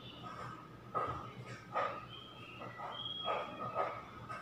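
A dog barking, four short barks spaced roughly a second apart, over a faint steady hum.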